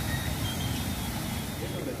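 Steady outdoor rushing noise with a low rumble, then a voice begins near the end.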